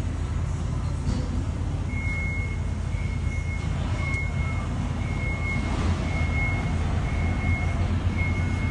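A steady low mechanical rumble with a high beep that sounds about once a second from about two seconds in.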